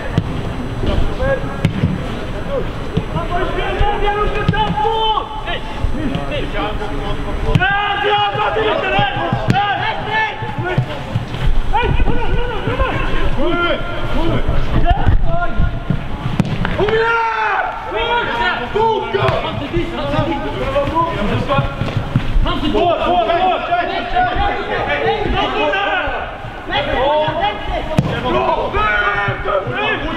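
Players' shouts and calls carrying across a football pitch during play, many voices overlapping, with occasional dull thuds of the ball being kicked.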